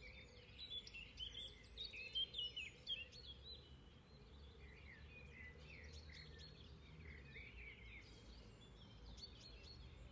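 Faint birdsong: small birds chirping and warbling on and off over a low, steady outdoor background rumble.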